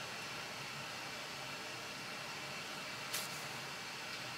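Steady faint hiss of room tone, with one brief soft rustle about three seconds in as gloved hands turn the knife over.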